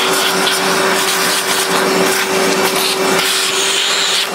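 Vacuum cleaner running steadily at one even pitch, its nozzle sucking leftover coffee grounds out of the burr chamber of a Rancilio Kryo 65 espresso grinder.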